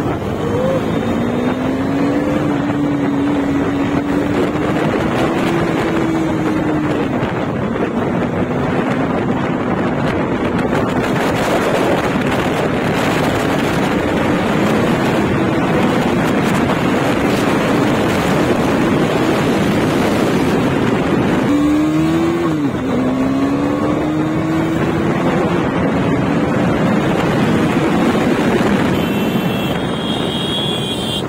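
KTM Duke 390 single-cylinder engine running under way, its pitch climbing with the throttle and falling back twice, about seven seconds in and again around twenty-two seconds in, over heavy wind noise on the microphone.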